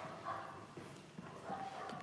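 A few faint footsteps on a tiled floor in a quiet room.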